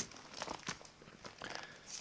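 Faint rustling of Bible pages being handled, with a few small scattered clicks.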